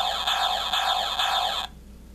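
Electronic battle-sound chip in a 1991 G.I. Joe Super Sonic Fighters Rock 'n Roll backpack, set off by its far-right button: a buzzy electronic sound effect of fast repeating pitch sweeps that cuts off suddenly near the end. It is meant as one of the toy's weapon sounds, which the owner wonders might be the mortar launcher, though to him it does not really sound like one.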